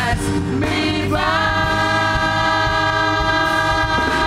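Gospel worship music with singing. From about a second in, one long chord is held steady.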